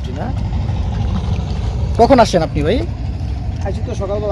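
A low, steady engine drone that swells in level at the start and runs on, with a voice speaking briefly about halfway through.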